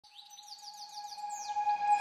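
Intro sound effect: a quick run of short, high, falling chirps over a steady held tone, the whole swelling louder toward the end.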